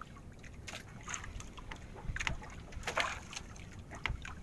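Water slapping and sloshing against an outrigger fishing boat's hull and bamboo float, in several short splashes, over a low rumble of wind on the microphone.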